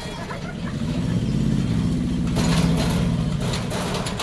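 Tata Ace mini truck pulling away at low speed, its engine running with a steady low note that grows louder about a second in.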